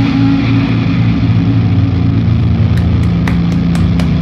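A low, steady drone of a distorted electric guitar and bass chord held in a stoner-metal song. From about three seconds in, hands clap several times over it.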